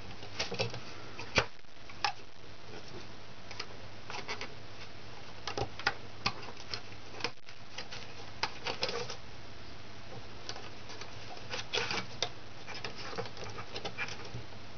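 Irregular light clicks and taps of a loom hook against the plastic pegs of a rubber-band loom as rubber bands are hooked and looped over the pegs, with a sharper click about a second and a half in.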